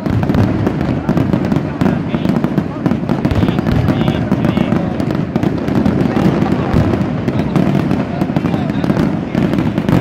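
Fireworks going off as a dense, unbroken barrage: many overlapping bangs and crackles with no pause.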